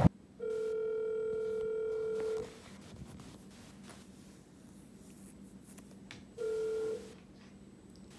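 Smartphone on speaker playing the ringback tone of an outgoing call: one steady two-second ring, about four seconds of silence, then a second ring that cuts off after about half a second.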